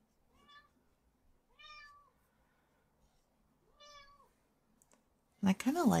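A house cat meowing faintly three times, each meow a short call that rises and falls in pitch, spaced about a second and two seconds apart.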